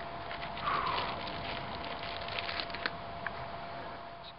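Scattered light clicks and crackles of footsteps on a dirt trail and a handheld camera being moved, over a faint steady hum.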